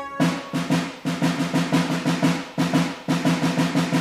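Drums alone playing a steady, repeating march rhythm of quick strokes, several a second, in a percussion break of a military marching song; the melody drops out right at the start.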